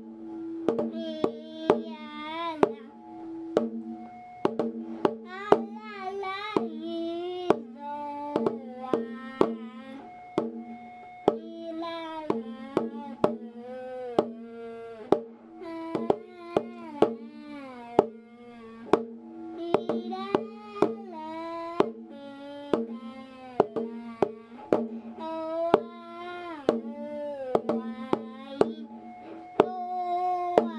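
A voice singing a slow, sliding, ornamented melody, said to be a Japanese New Year's song, over a steady low drone tone. Sharp percussive knocks come every second or so and are the loudest sounds.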